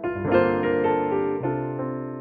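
Yamaha Clavinova CLP700-series digital piano on its Bösendorfer grand piano voice, played in a light cocktail-piano style. A chord is struck at the start and another, with a lower bass note, about one and a half seconds in, each left to ring.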